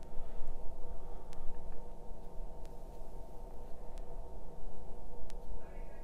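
Steady low background hum, with a few faint ticks a little over a second apart.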